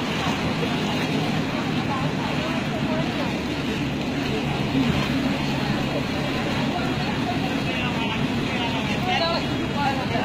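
Steady rain on a street, with indistinct voices in the background, clearest near the end.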